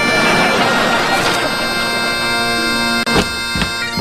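Bagpipes playing: a steady drone under the chanter's melody. About three seconds in, the sound breaks off for an instant, and two low thumps follow.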